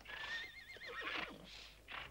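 A horse whinnying once: a high, wavering call of under a second.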